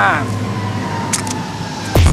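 Psytrance track in a breakdown: with the kick drum dropped out, a sampled voice trails off just after the start over a sustained noisy synth wash and a held tone, and the driving kick drum comes back in right at the end.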